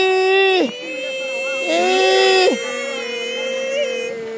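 A woman crying: two long, wailing cries, the second about two seconds in, with a thin, high whimper held between them.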